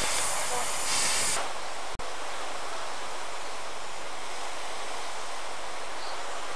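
Narrow-gauge steam locomotive letting off steam with a loud hiss that stops sharply about a second and a half in. After a brief dropout, a steady, quieter rushing background follows.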